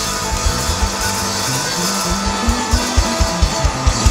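Live soul and blues band playing, electric guitar over bass notes and a drum kit keeping a steady beat.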